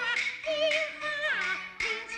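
A Peking opera aria line sung in a high, wavering voice with strong vibrato, over the pitched melody of the accompanying ensemble. A sharp knock comes near the end.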